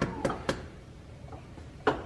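A small chicken egg tapped against the rim of a frying pan to crack it: three quick light taps, then a single sharper tap near the end. The shell is strong and slow to give.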